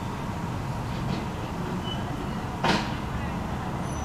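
Steady low rumble of a car engine idling, with a single short, sharp knock about two and a half seconds in.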